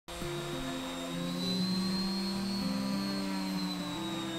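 Electric orbital sander running with a steady high whine as it sands old antifouling paint off a sailboat keel. Background music of held chords changes every second or so underneath.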